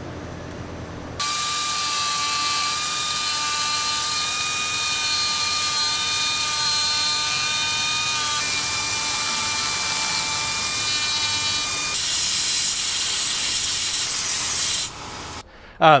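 A small hand-held rotary grinding tool running at a steady high-pitched whine as its burr cuts a V-groove along a crack in a cast iron cylinder head, to make room for filler. It starts about a second in and stops about a second before the end.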